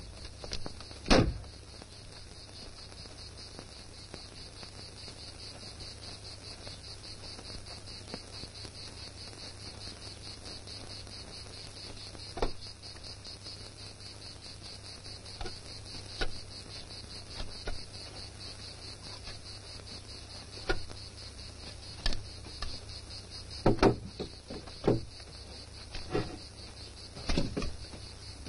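Steady chirring of insects throughout. Over it come a loud knock about a second in and a scattered series of wooden knocks and clatters later on, as a wooden ladder is lifted and propped against a pole.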